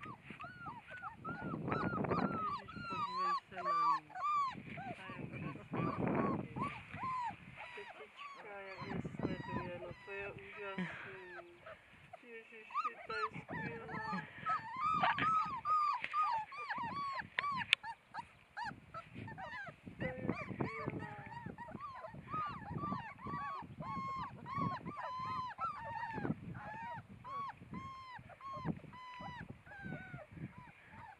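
Young puppies whimpering and whining, a continual stream of short, high, arched squeaks from several pups at once.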